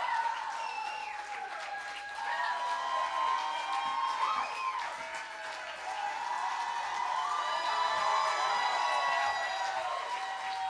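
Crowd clapping and cheering, with many voices whooping and calling out over the applause.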